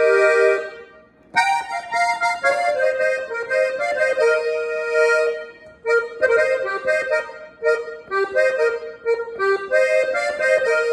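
Piano accordion played on its right-hand keyboard: a held chord, a short break about a second in, then a melody of sustained notes that turns to shorter, quicker notes in the second half.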